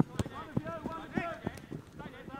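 Football being played: players calling and shouting to each other, with several sharp thuds of the ball being kicked and running footsteps.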